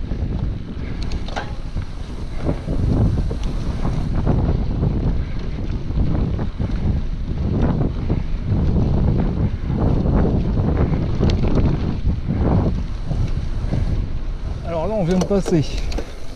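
Wind buffeting an action camera's microphone while riding a mountain bike over a dirt track, with low tyre rumble and scattered clicks and rattles from the bike. A man's voice begins near the end.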